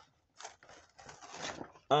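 Fingers prying open a perforated cardboard door on a Hot Wheels advent calendar: faint scraping and tearing rustles, a little louder about a second in.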